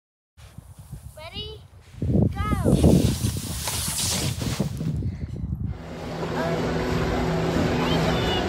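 Two rising-and-falling vocal cries, then a loud rushing hiss lasting about three seconds that cuts off suddenly. After a short gap come the steady hubbub of a crowd and background music.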